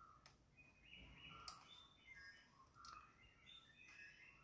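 Near silence, with faint high chirps and a few soft clicks.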